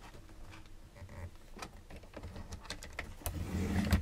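Chipboard being handled on a paper trimmer, with scattered light clicks. Near the end comes the louder sound of the trimmer's score-blade carriage sliding along its rail, scoring the chipboard.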